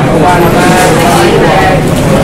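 Busy restaurant kitchen: voices talking over a loud, steady roar, with a few sharp clinks about a second in.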